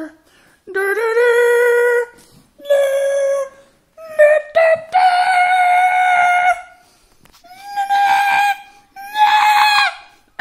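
A man singing a mock fanfare of held 'dun' notes, about seven of them, each higher than the last, ending on the highest and loudest note as loud as he can go.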